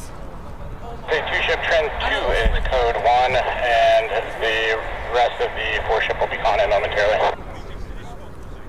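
A voice coming over a radio, sounding thin and narrow, starting about a second in and cutting off abruptly near the end: an airband scanner picking up aircrew or air traffic transmissions.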